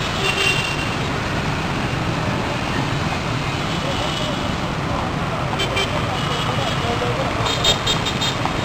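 Steady street traffic noise from passing motorbikes and cars, with people's voices mixed in and a few short high tones near the middle and end.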